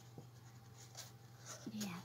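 Faint handling of a paper greeting card: a few soft rustles and light ticks over a low steady hum. A woman says "yeah" near the end.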